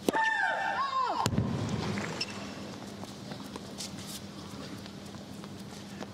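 Racket striking a tennis ball on a serve, with the server's long high-pitched shriek that drops in pitch at its end. A sharp knock follows about a second later, then a low crowd murmur as the ball is called out.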